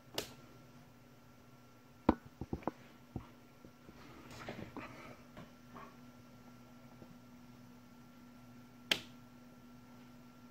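Small rocker switches on a homemade 18650 battery charging station being flicked, giving sharp clicks: one at the start, a quick cluster about two seconds in, and a last one near the end. Between the clicks there is some handling rustle, and a faint steady hum runs underneath.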